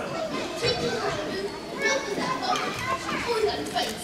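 Young girls speaking into handheld microphones, their voices amplified in a large hall.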